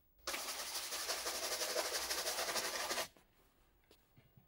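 A bristle shoe brush scrubbed rapidly over a leather shoe, a dense scratchy rush that starts abruptly and cuts off after about three seconds.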